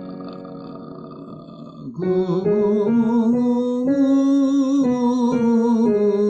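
A piano chord dies away, then about two seconds in a voice sings a warm-up scale over it, holding steady notes that step up and come back down.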